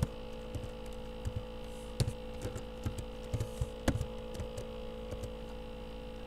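Steady electrical mains hum on the recording, with scattered, irregular clicks of computer keys and a mouse.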